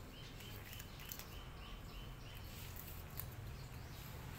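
A small bird chirping a quick run of about eight short, even notes, roughly four a second, then stopping, over a faint low background rumble.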